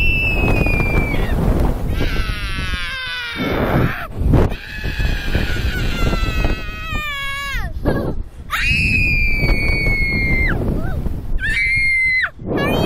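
Young girls screaming on a Slingshot reverse-bungee ride: a string of long, high-pitched screams, several falling in pitch as they end, with short breaks between them. Wind rushes over the microphone throughout.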